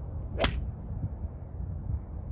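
A golf ball struck with a 4-iron: one sharp click of impact about half a second in.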